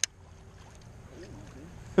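Quiet outdoor background with a low rumble of wind on the microphone, and a faint distant voice just over a second in.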